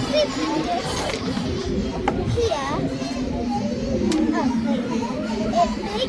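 Many children's voices chattering and calling over one another, with a steady low hum underneath and a few faint clicks.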